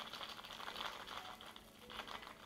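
A shaken cocktail trickling in a thin stream from a metal shaker through a fine-mesh strainer into a glass of ice: a faint, fast patter of drips and tiny crackles that thins out toward the end.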